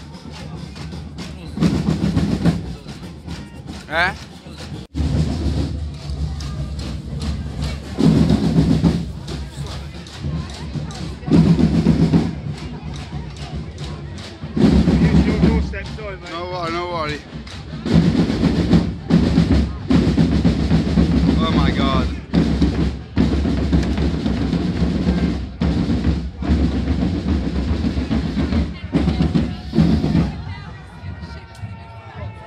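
Procession drums, bass and snare, beating and rolling, rising to loud surges every few seconds, with voices from the crowd around them.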